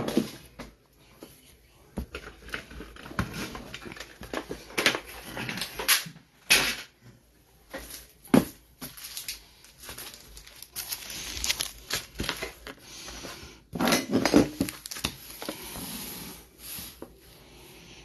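Cardboard trading-card hobby box being handled over a wooden table: scattered knocks, rubs and scrapes, with a cluster of louder ones about two-thirds of the way through.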